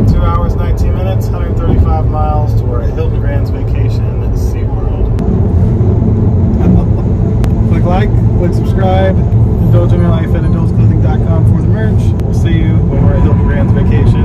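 Steady road and tyre rumble inside a car cabin while driving at highway speed, with voices talking over it.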